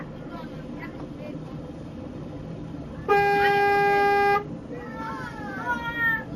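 A vehicle horn sounds one loud, steady blast lasting just over a second, over the steady low rumble of a moving vehicle.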